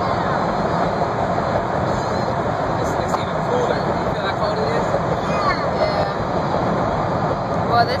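Steady road and engine noise inside a car's cabin as it drives through a road tunnel.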